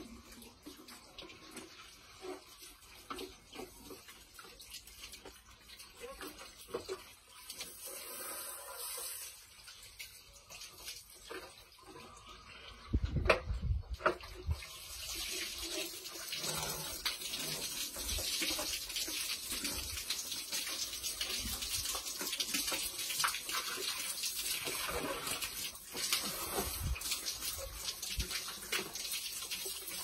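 Water from a garden hose running into and through a fish pump filter canister as it is rinsed out, with scattered clicks and a few loud knocks about halfway through; from then on the water runs in a steady hiss.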